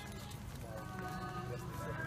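A group of walking people singing a hymn together, the men's voices low with long held notes, over the shuffle of footsteps on pavement.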